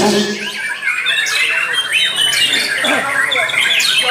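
Several caged white-rumped shamas (murai batu) singing at once: a dense, overlapping run of quick whistles, chirps and trills.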